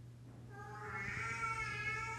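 A long, high-pitched cry starting about half a second in, held near one pitch with a slight fall.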